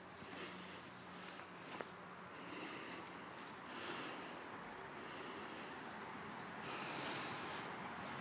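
Steady, high-pitched insect chorus, a continuous unbroken drone.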